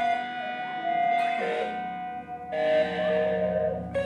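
Live electric guitar duo playing a slow passage of held, sustained notes, one guitar shaped by effects pedals, with the notes changing about two and a half seconds in and again near the end.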